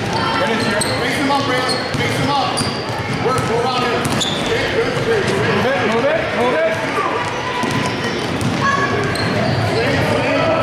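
Youth basketball game in a large gym: spectators and benches talking and calling out over a basketball being dribbled and short, high sneaker squeaks on the court.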